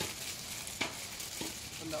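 Hands scooping and scraping loose soil among dry leaf litter, a continuous crackling rustle with a couple of sharp clicks, about a second in and again past the middle.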